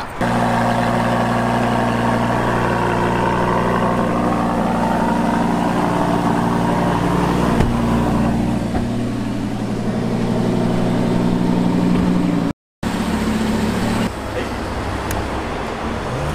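Lamborghini Huracán's V10 engine idling steadily. The sound cuts out for a moment about three-quarters of the way through and is a little quieter afterwards.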